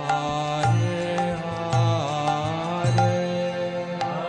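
Devotional kirtan: sung chanting over steady held instrumental tones, with regular hand-cymbal strikes and a pulsing drum beat.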